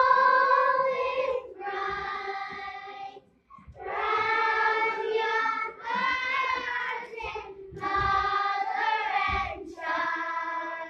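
Children's choir singing together in sustained phrases of held notes, with short breaks for breath between phrases.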